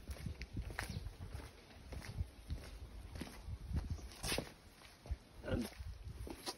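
Footsteps on stone paving slabs, with a few scattered soft knocks and rustles and a low rumble underneath.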